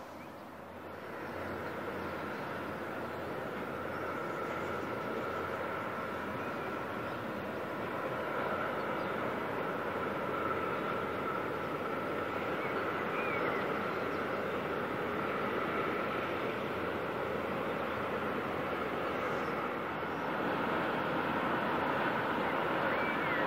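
Freight train running along a riverside line at a distance: a steady rolling noise with a faint held tone in it, growing louder over the first couple of seconds and then holding.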